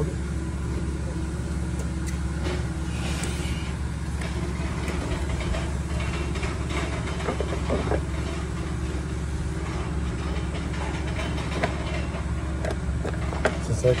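Steady low hum of an idling vehicle engine, with a few light taps and scrapes as a long-reach lockout tool works inside the truck's wedged-open door gap.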